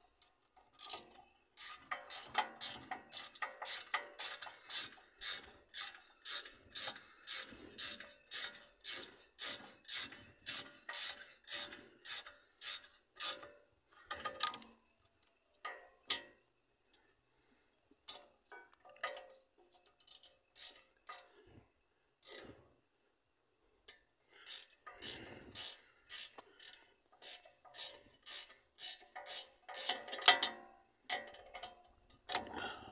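Ratchet wrench clicking as it does up the rear brake caliper bolts, in a steady run of about two clicks a second. The clicking stops for several seconds midway, with only a few stray clicks, then resumes near the end.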